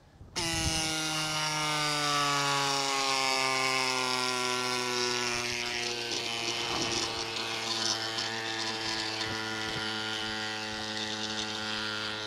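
CYCPLUS Tiny Pump electric mini bike pump starts about half a second in and runs steadily, inflating a road bike tyre, with a motor whine whose pitch slowly sinks.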